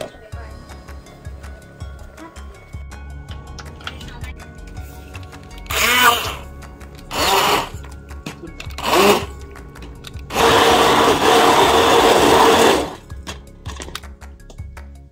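Handheld immersion blender puréeing soft cooked apples and pears in a pot: three short pulses, then a steady run of about two and a half seconds.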